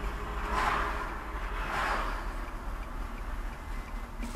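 Steady low road and engine rumble from a car in motion, heard from the car, with two swells of noise from vehicles passing the other way, the first about half a second in and the second about two seconds in.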